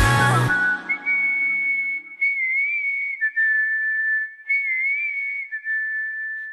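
A whistled melody of held high notes with small wavers, sometimes two lines at once, left on its own as the rest of a K-pop song drops out about half a second in, at the song's close.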